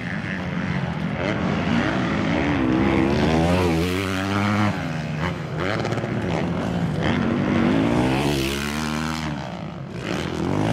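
Several 450-class motocross bikes racing, their engines revving up and down through the gears. The overlapping engine notes rise and fall in pitch and swell twice as bikes come closer.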